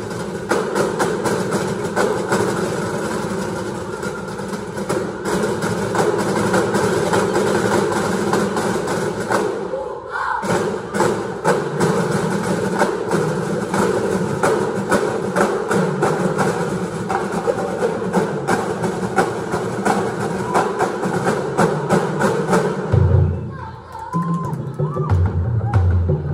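A school drum and lyre corps playing live: bell lyres and mallet percussion carrying the tune over a steady drum beat, in a large echoing gym. The playing drops away for a moment about ten seconds in, then picks up again.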